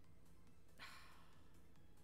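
Near silence broken by one short exhaled breath, a sigh, about a second in.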